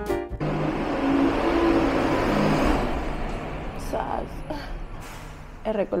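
A garbage truck running, a steady engine rumble and noise that is loudest in the first few seconds and gradually fades away.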